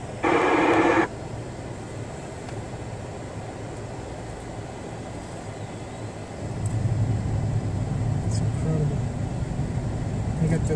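Steady engine and road noise heard inside a moving vehicle's cabin, with a short, loud burst from the mobile amateur radio about a quarter second in that cuts off after under a second. The low rumble grows louder about six and a half seconds in.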